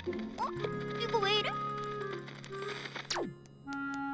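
Cartoon electronic sound effects from a handheld map gadget being tapped, ending about three seconds in with a single falling power-down sweep as the device's screen goes dead, a sign the gadget has broken down. Background music plays throughout.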